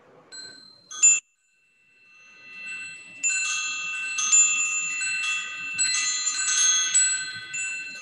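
Metal chimes ringing at a few fixed high pitches: a couple of strikes in the first second or so, a sudden cut to silence, then a fade-in of many overlapping strikes that keep ringing.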